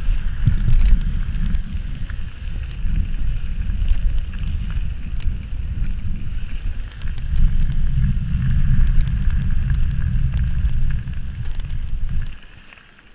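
Wind buffeting a bicycle-mounted camera's microphone as the bike rolls quickly downhill. The deep rumble swells and eases in gusts, with a steadier hiss of tyres on the rough lane and scattered small ticks and rattles from the bike.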